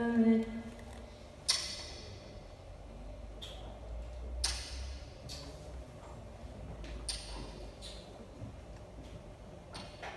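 Sparse, irregular strikes on small hand-held metal percussion, a small cymbal hit with a stick, each hit leaving a short bright ring; the loudest comes about a second and a half in, with another strong one about four and a half seconds in. A sung note cuts off right at the start.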